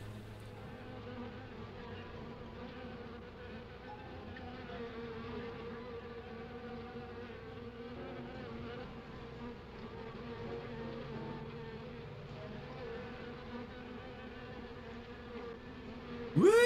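A swarm of wasps buzzing around their nest, a steady droning hum that wavers slightly in pitch, heard on an old film soundtrack.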